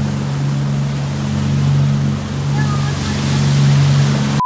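Motorboat under way at speed: a steady engine drone over the rushing water of its wake and wind.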